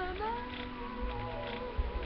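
An insect buzzing with a steady, slightly wavering pitch, over a low rumble, with a short thump just before the end.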